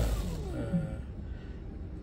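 A low motor hum fades out within the first half second, leaving faint, steady background noise with a brief hesitant 'uh'.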